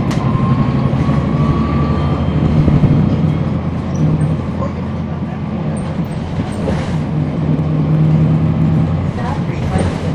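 Cummins ISL9 diesel engine of a NABI 40-foot transit bus heard from inside the passenger cabin, running through a ZF Ecolife six-speed automatic, its drone rising and falling several times. A faint high whine climbs slightly in pitch in the first couple of seconds.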